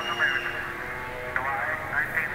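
Jungle drum and bass DJ mix from a live rave tape recording playing fairly quietly, with brief faint fragments of an MC's voice over it.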